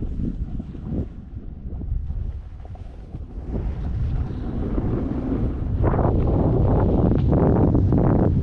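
Wind rushing over a helmet-mounted camera's microphone as the rider slides downhill on snow, mixed with edges scraping the packed snow. The rush grows louder about halfway through as speed builds.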